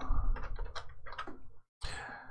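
Computer keyboard typing: a quick run of keystrokes, then a short pause and one more click near the end.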